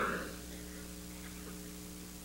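Steady electrical mains hum made of several even low tones, with voices dying away just after the start.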